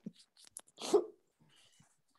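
The tail end of men's laughter over a video call: a few short, breathy laughs, the loudest just before a second in.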